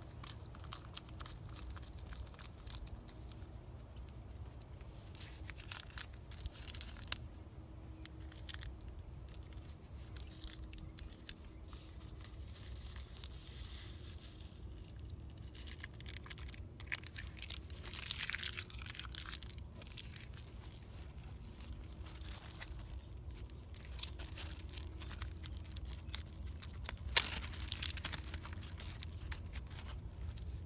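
Small handling noises: plastic packets crinkling and tearing, and light clicks of a spoon and cup, with a sharp click near the end, over a steady low rumble.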